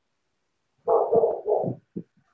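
Silence, then about a second of a person's muffled, garbled voice coming through compressed video-call audio.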